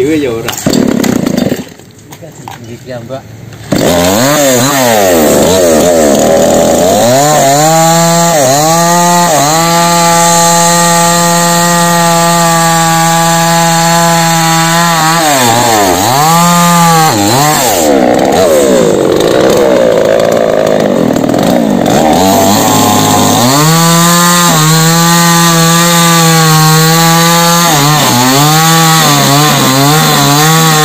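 Petrol chainsaw started from the ground, catching about four seconds in, then run loud at high revs with the throttle dropped and opened again several times. Near the end it is sawing into a fallen coconut palm trunk.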